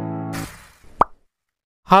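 Intro jingle ending: a held keyboard chord fades out with a brief whoosh, then a single short pop sound effect about a second in, followed by silence until a voice begins right at the end.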